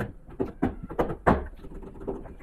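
A few light knocks and clicks, about five in two seconds, with a slightly heavier thud near the end.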